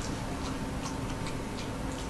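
Light, sharp clicks, four or five of them at uneven spacing, over a faint steady hum.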